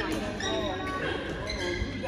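Badminton play on an indoor sports-hall court: shoes squeaking on the court floor and light racket hits on the shuttlecock, in a hall full of voices.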